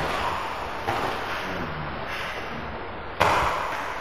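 A few sudden noisy thumps, each fading out over about half a second, the loudest about three seconds in: bare feet and heavy cotton practice uniforms of two jujutsu practitioners closing in for a grab on the dojo mat.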